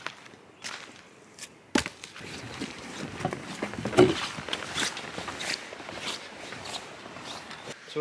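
Footsteps on the wooden planks of a footbridge, a run of small knocks and scuffs from about two seconds in until just before the end, with one sharp knock as they begin.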